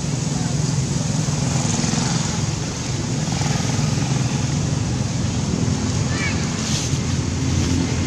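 Steady outdoor background noise: a low rumble like distant traffic mixed with faint, indistinct voices, with a brief high chirp about six seconds in.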